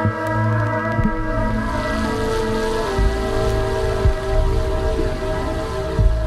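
Live ambient electronic music: layered, sustained synthesizer drone tones that shift pitch now and then. A rain-like hiss comes in about two seconds in.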